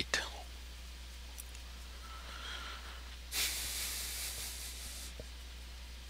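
A steady low electrical hum, with a soft hiss that starts suddenly about three seconds in and fades out after nearly two seconds.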